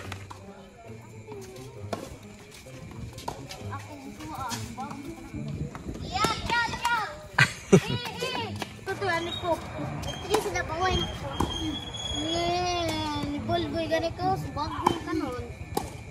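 Children's voices chattering and calling out, with occasional sharp knocks of tennis balls struck by rackets during a rally. The loudest knock comes about halfway through.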